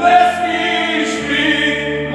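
Men singing a Moravian Horňácko folk song together at full voice, with a double bass holding low notes underneath that change about a second in.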